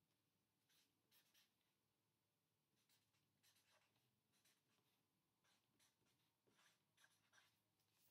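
Near silence, broken by faint, short scratches of a marker writing.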